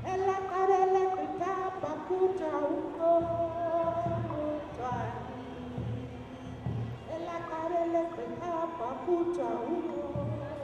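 A woman singing solo into a handheld microphone, holding long notes that step up and down in pitch.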